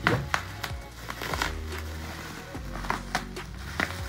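Scissors snipping through bubble wrap and the plastic around a parcel, a scattering of short sharp cuts and crackles, with background music underneath.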